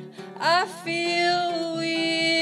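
A woman singing to her own acoustic guitar. Her voice slides sharply up into a note about half a second in and holds it steady.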